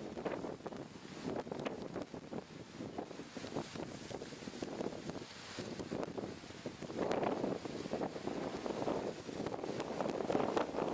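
Gusty thunderstorm wind buffeting the microphone in uneven rushes, with a stronger gust about seven seconds in.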